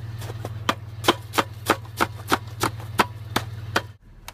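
Footsteps crunching on packed snow, about three steps a second, over the steady low hum of the truck's idling engine.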